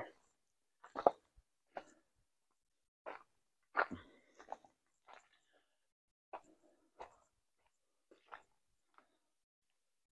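Footsteps crunching on dry fallen leaves on a woodland trail: faint, irregular steps about once a second, one a little louder just before the middle.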